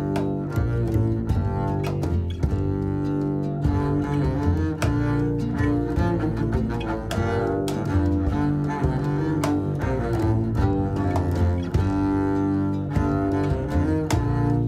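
Double bass played with a bow, a quick run of separate notes with sharp attacks, moving between pitches across the instrument's range.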